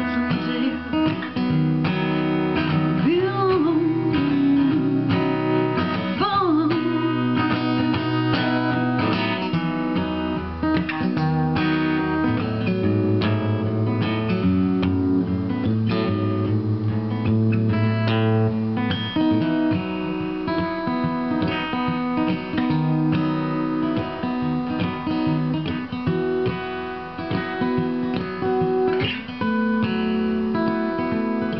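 Acoustic guitar strummed and picked in a steady song accompaniment. A woman's wordless vocal line glides over it in the first several seconds, then the guitar carries on alone.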